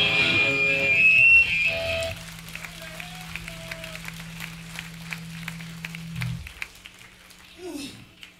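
A hardcore band's loud final chord with guitar feedback rings out for about two seconds and cuts off, leaving a steady low amplifier hum while scattered hand claps come from the crowd. The hum stops about six seconds in.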